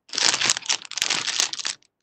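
Crinkling, rustling handling noise with scattered sharp clicks, picked up by a participant's open microphone on a video call; it stops shortly before the end.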